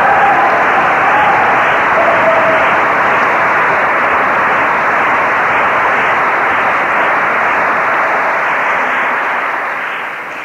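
Audience applause from a large crowd, a dense even clapping heard through a muffled old recording that cuts off the high end. It tapers off near the end.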